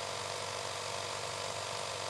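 Vintage film-reel sound effect: the steady whir and hiss of a running film projector over a faint low hum.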